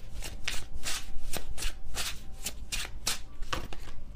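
A deck of tarot cards being shuffled by hand: a rhythmic run of quick swishing strokes, about four or five a second.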